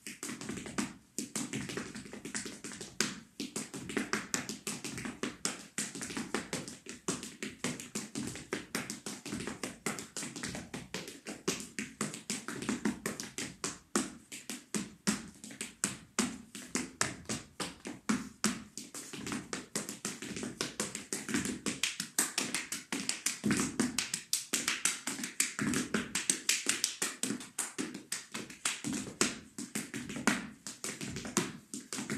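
Afro-Peruvian zapateo footwork: hard-soled shoes tapping, stamping and brushing on a wooden floor in rapid, shifting rhythms, many strikes a second without a break.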